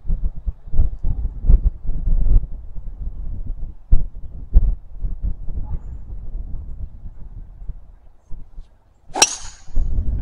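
Wind rumbling on the microphone in irregular gusts, then near the end a golf driver's clubhead striking the ball off the tee: one sharp crack with a short high metallic ring.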